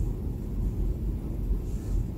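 Steady low room rumble with no distinct events: the background noise of the hall picked up by the recording.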